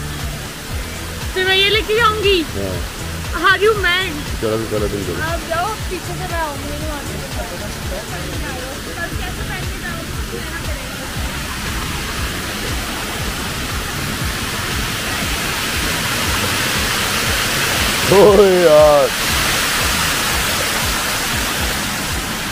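Floodwater running fast over paved ground and steps: a steady rushing hiss that grows louder through the second half.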